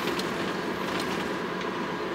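Steady engine and road noise heard inside the cab of a Hino truck as it drives along.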